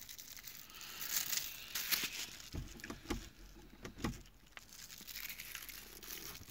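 Faint rustling and crinkling with a few soft clicks scattered through: handling noise as the phone is moved about.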